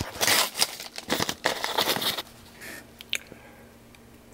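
Yellow padded paper mailer envelope rustling and crinkling as it is handled and opened, for about two seconds, then a quieter stretch with a single light click.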